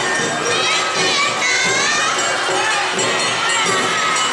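Awa odori dancers' high voices shouting their dance calls together, many voices gliding up and down at once, over the troupe's festival music.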